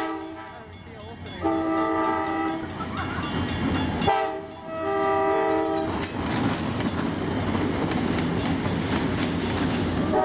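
Wisconsin Southern EMD E9A diesel locomotives sounding a multi-note air horn for a grade crossing: the tail of one blast at the start, then two long blasts of about a second and a half each. From about six seconds in, the locomotives and cars pass close by with a steady loud rumble of engines and wheels.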